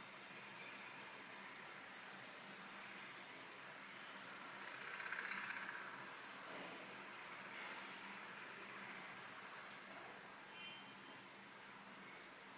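Faint construction noise from outside, a steady noisy wash that swells twice in the middle and fades again, over a low steady hum.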